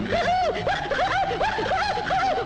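High-pitched cartoon laughter: a quick, even run of chuckling 'heh-heh' syllables, about four to five a second, each swooping up and down in pitch.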